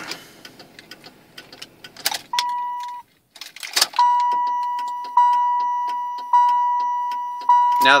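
Turn-signal flasher of a 1995 Cadillac Fleetwood clicking rapidly and unevenly; the left signal bulb is dual-filament with one filament not lighting. A brief tone sounds a couple of seconds in, and from about four seconds in the car's warning chime repeats about once a second over the clicking, each chime fading.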